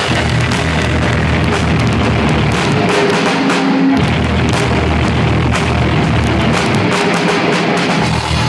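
Live industrial rock band playing loud, a drum kit driving it along with guitar and bass. The low end drops out about three seconds in and comes back about a second later.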